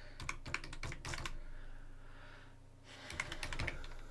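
Typing on a computer keyboard: a quick run of keystrokes, a pause of about a second and a half, then a second short run of keystrokes near the end.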